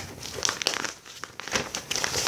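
Irregular crackling and rustling, a run of small uneven clicks and crinkles close to the microphone.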